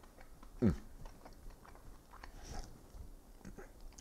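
A man biting and chewing a piece of firm Alpine-style cheese: quiet mouth noises and small clicks. A short falling-pitched sound stands out just over half a second in.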